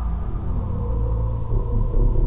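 A deep, steady low rumble.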